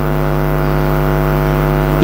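Steady electrical mains hum from the microphone and sound system: a constant low drone with many evenly spaced overtones that does not change.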